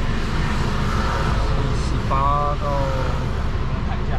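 Steady road and engine rumble inside a moving car's cabin, with a brief voice sound about two seconds in.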